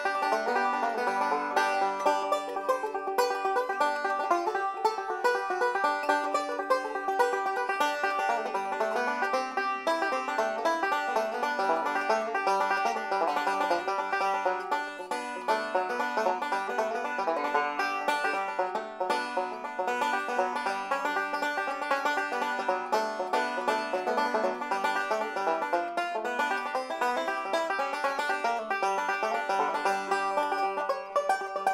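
Deering Classic Goodtime Special five-string resonator banjo with a flat tone ring, picked fingerstyle in a fast, continuous stream of plucked notes.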